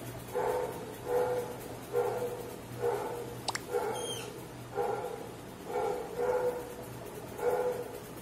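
A dog barking repeatedly, about eight short barks at a steady pace of roughly one a second. A brief high squeak is heard in the middle.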